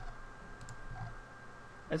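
A few faint clicks from a computer mouse as the code editor is scrolled and clicked through, over a faint steady high whine.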